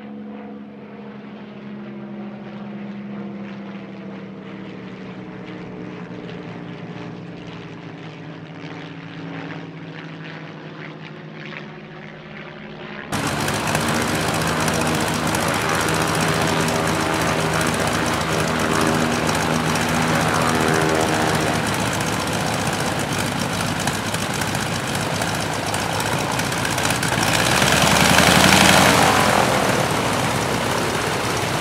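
Propeller aircraft engines droning overhead as a formation of three planes passes, the pitch sinking slightly. About 13 seconds in, the sound jumps to a Stearman N2S biplane's radial engine running close by, much louder, swelling near the end.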